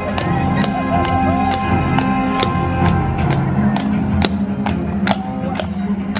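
Halloween parade music playing over loudspeakers: sustained tones with a sharp percussive beat about twice a second.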